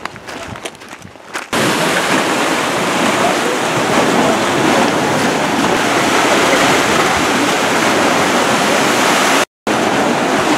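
Footsteps crunching on a gravel path. They give way suddenly to a loud, steady rushing of surf and wind, which cuts out for a moment near the end.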